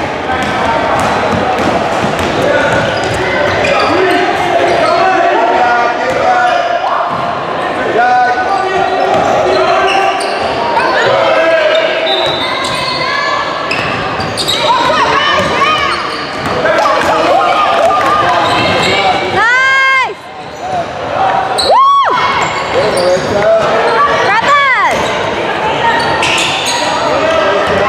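Basketball game sounds in a large gym: the ball bouncing on the hardwood court and voices calling out across the hall. Sharp sneaker squeaks on the floor come three times in the last third.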